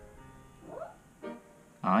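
Quiet background music with guitar, running under a pause in the talk.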